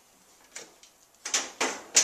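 Power cable and plug being handled: brief rustling and scraping, then a sharp click near the end.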